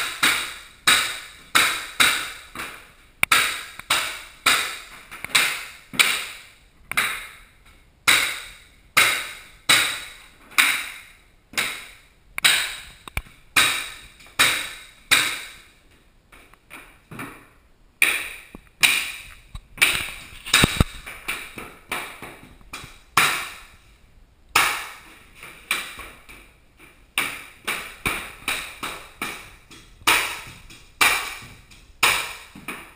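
Pneumatic flooring nailer firing cleats into hardwood floorboards over and over, about one shot every two-thirds of a second. Each shot is a sharp crack with a short metallic ring. The shots turn softer for a couple of seconds midway and pause briefly later on.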